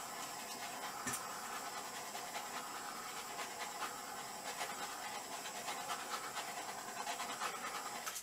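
Handheld butane torch burning with a steady hiss as it is passed over wet acrylic paint, cutting off near the end.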